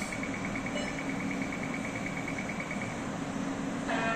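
Toshiba Aquilion 64-slice CT scanner system running a delayed-phase helical scan: a steady low mechanical hum with a fast run of short high beeps that stops about three seconds in.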